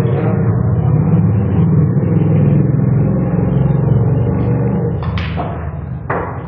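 A loud, steady low rumble, with two sharp knocks near the end.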